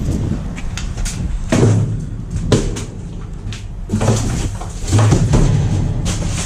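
Several hollow metal bangs and rattles from a steel dumpster and its sliding side door being handled, about five separate knocks spread over a few seconds.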